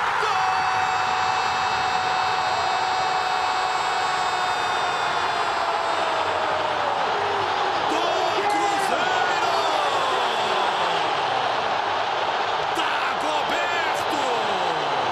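A football TV commentator's drawn-out goal cry: one voice held on a single note for about seven seconds, slowly sagging at the end, followed by more excited shouting that swoops up and down, over a stadium crowd cheering.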